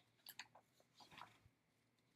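Faint rustling and a few soft clicks as a spiral-bound cross-stitch pattern booklet is pulled out and handled, with quiet room tone between.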